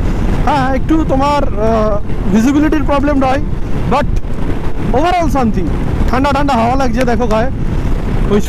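A man talking over steady wind rumble on the microphone and a motorcycle running at highway speed.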